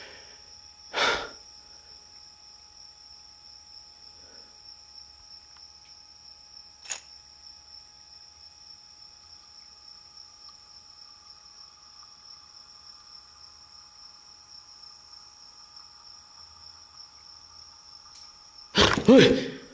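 Quiet background with a steady high-pitched whine, broken by a short loud noise about a second in and a single sharp click about seven seconds in.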